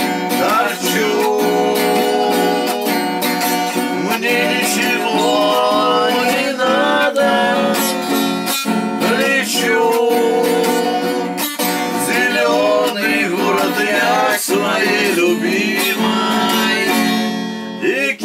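Acoustic guitar strummed in a steady rhythm, with a man's voice singing a melody over it.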